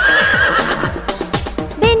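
Horse whinny sound effect, one wavering call under a second long, over children's-song backing music with a steady drum beat; singing comes in near the end.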